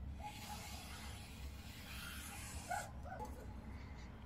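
Faint barking of a small dog, a few short barks: one near the start and two close together about three seconds in.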